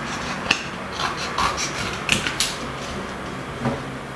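Small scissors snipping through kraft-paper card, a handful of short, sharp cuts in the first half, then quieter handling of the paper.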